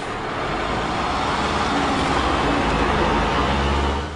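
Low rumble of a motor vehicle under a steady wash of noise, the deep part swelling in the second half.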